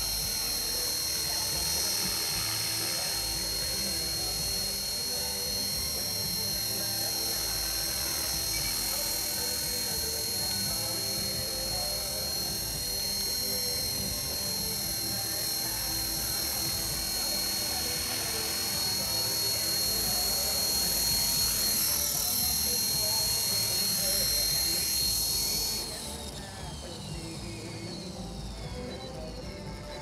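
Electric 450-size RC helicopter (a T-Rex 450 clone) flying 3D: a steady high-pitched motor and gear whine, with the rotor blades whooshing in rising and falling sweeps. About four seconds before the end the power is cut, and the whine winds down in falling pitch as the rotor spools down.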